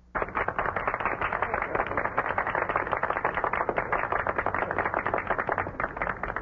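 A crowd applauding: dense, even clapping that starts suddenly.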